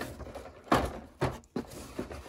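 Cardboard model kit boxes being handled and pulled out of a cardboard carton, knocking and sliding against each other: a few dull thumps, the loudest about three-quarters of a second in.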